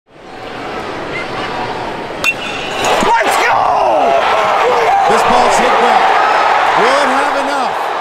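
Crowd noise in a stadium, then a single sharp ping of a metal baseball bat striking the ball about two seconds in, a walk-off home run. The crowd grows louder into cheering with shouting voices right after the hit.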